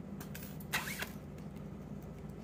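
Pliers gripping and working a pin out of a freeze-dried fawn mount, giving short scraping rustles, the clearest just under a second in, over a steady low hum.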